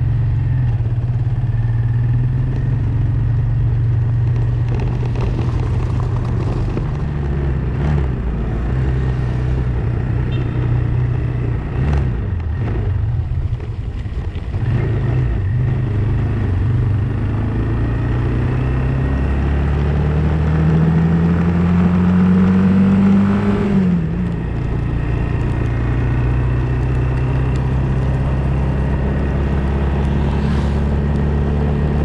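Motorcycle engine running while the bike is ridden, heard from on board. The engine note is steady, with a few abrupt shifts. About two-thirds through it climbs in pitch for a few seconds as the bike speeds up, then drops suddenly.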